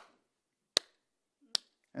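A man clapping his hands slowly: two single sharp claps a little under a second apart, after the tail of one right at the start, a mimed grudging, reluctant applause.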